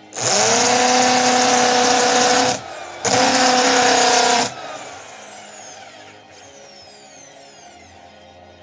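Electric drill spinning a wooden stick being shaped into a dowel, run in two bursts. It spins up with a rising whine into a steady tone for about two and a half seconds, stops briefly, then runs again for about a second and a half before cutting off.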